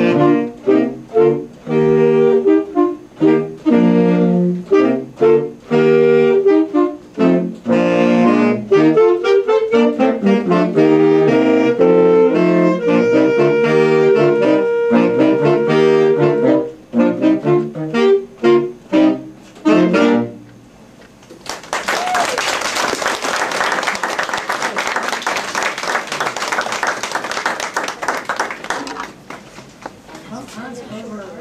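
A saxophone ensemble with a baritone saxophone plays a lively passage in short, separated notes, ending on a held chord about two-thirds of the way through. Audience applause follows.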